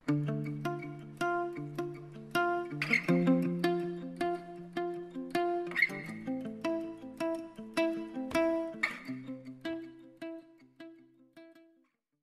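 Instrumental outro music of plucked notes, about two a second, that fades out over the last few seconds.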